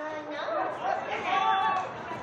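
Several people's voices talking and calling out at once, with no clear words, loudest about three quarters of the way through.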